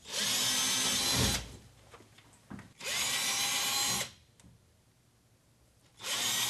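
Cordless drill with a 5.5 mm twist bit drilling holes into the wall for wall anchors. It runs in two short bursts of about a second each, the second winding up in pitch as it starts, with quiet between.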